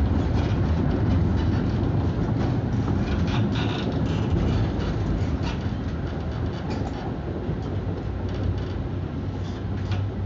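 Konstal 105Na tram under way, heard from inside: a steady low rumble of wheels and running gear on the rails, with scattered clicks and rattles. It grows gradually quieter over the second half.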